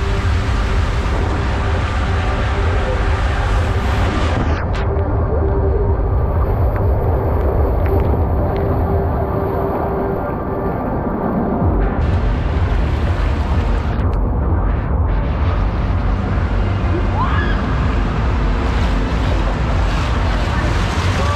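Water rushing and spraying under a riding mat on a fiberglass racing waterslide, a loud steady rush with a heavy rumble throughout.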